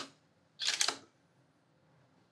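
Single-lens reflex camera shutter and mirror clicking in one short clatter a little over half a second in.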